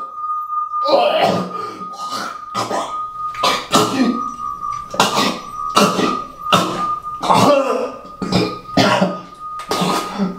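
A man coughing and gagging hard, over and over, in harsh bursts about every half second to a second, over a steady high ringing tone.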